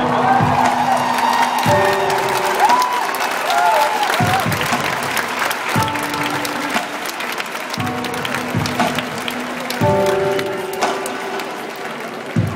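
A stadium concert crowd clapping and cheering over a live band's music, which plays sustained low chords that change about every two seconds. A few short wavering high notes come through in the first four seconds.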